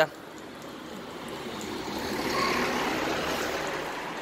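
A vehicle passing along the street, its noise swelling to a peak about halfway through and then fading.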